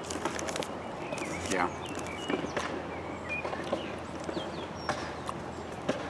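Birds chirping in the background: short, scattered whistled chirps over a steady outdoor hum, with a few faint clicks from eating.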